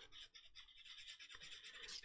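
Very faint rubbing of a sanding stick over a plastic model kit part, smoothing out sanding marks and scratches.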